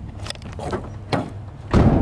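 Two thumps over a low steady hum: a short sharp knock a little past halfway, then a louder, heavier thud near the end.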